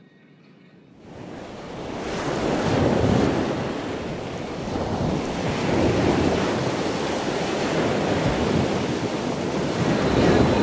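Ocean surf washing onto a sandy beach, mixed with wind on the microphone. It fades in over the first two seconds or so, then swells and ebbs steadily.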